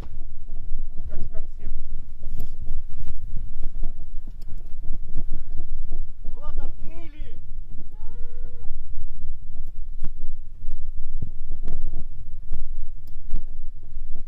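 Heavy, steady low rumble of wind buffeting the microphone, with scattered sharp knocks. Two short calls that rise and fall in pitch come about halfway through.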